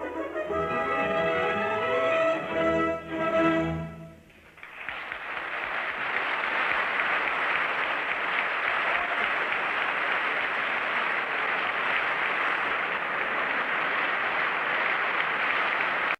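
The closing bars of an opera recording, with orchestra and voices, end about four seconds in. An audience then applauds steadily until the sound cuts off abruptly at the end.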